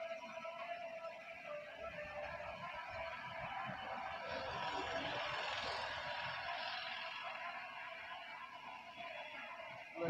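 Roadside street background noise that swells gently around the middle and fades again, with faint steady tones underneath.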